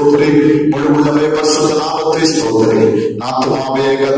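A man's voice chanting a slow devotional song, in long held notes with short breaks between phrases.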